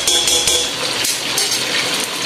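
Chicken, cubed potatoes and red peppers frying in olive oil in a stainless steel pot on high heat: a steady sizzle, a little louder at the very start.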